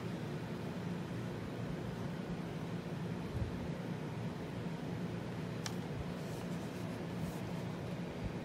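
Steady low room hum and hiss, with a faint tick about six seconds in as the slim DVD drive's casing is handled.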